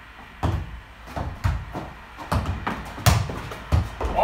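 A football thudding on the gym floor and off players' feet during a foot-tennis rally, with shoe steps: about eight irregular thuds, the loudest about three seconds in.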